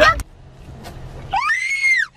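A woman's short, high-pitched scream that rises and then falls in pitch, starting about one and a half seconds in. A burst of laughter cuts off right at the start.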